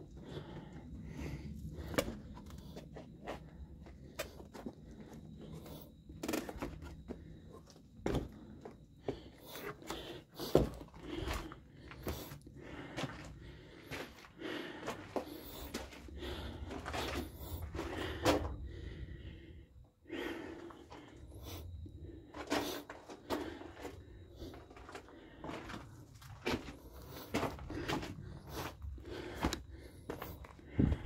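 Irregular footsteps crunching and knocking on a gravelly, rocky trail, over a low steady rumble.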